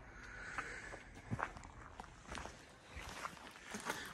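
Faint, uneven footsteps on a woodland trail.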